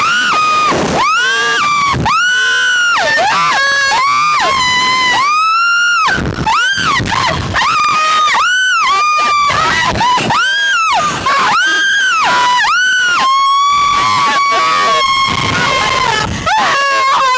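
Two women screaming while being flung on a slingshot reverse-bungee ride: a string of short screams that rise and fall in pitch, ending in one long, steady held scream near the end.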